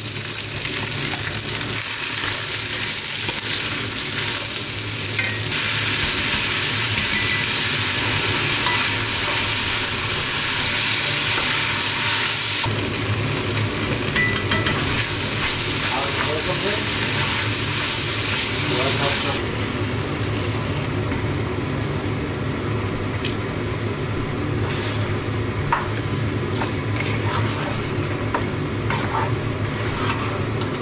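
Vegetables frying in curry paste in a cast-iron pot, a steady sizzle, stirred with a wooden spoon. The sizzle is louder through the middle and drops suddenly about two-thirds of the way in, after which a few short knocks of the spoon can be heard.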